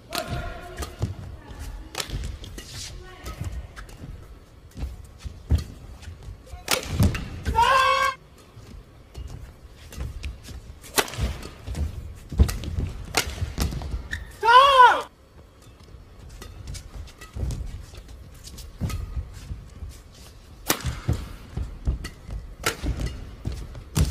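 Badminton rally: sharp hits of rackets on a shuttlecock, irregularly spaced, with short rubber shoe squeaks on the court floor, the loudest about two-thirds of the way through.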